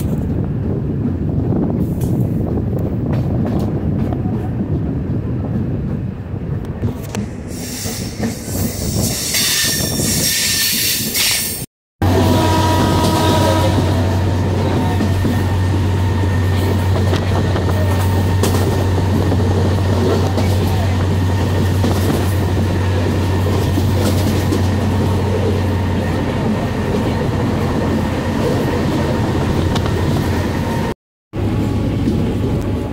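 Passenger train running at speed, heard from its open doorway: continuous rumble of wheels on rail mixed with rushing air. After a short break about twelve seconds in, a strong steady low hum runs under the rail noise and eases a little near the end.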